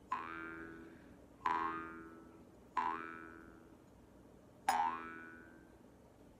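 Jaw harp plucked four times at a slow, uneven pace, each twang ringing out and fading over a second or more. After each pluck the overtones glide upward as the mouth changes shape, over a steady low drone.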